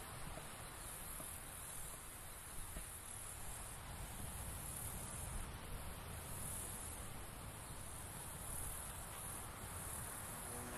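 A high-pitched insect chorus, trilling steadily and swelling and fading every second or so, over a low rumble.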